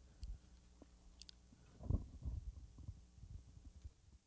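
Faint steady electrical buzz from a plugged-in guitar, with soft low thumps and rustles of equipment being handled; the loudest thump comes about two seconds in.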